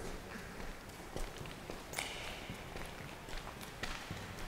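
Faint footsteps across a floor strewn with grit and debris: a handful of irregular steps and scuffs.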